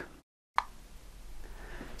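The sound cuts out to dead silence for about a third of a second, then a single short pop, followed by faint room tone with a low hum.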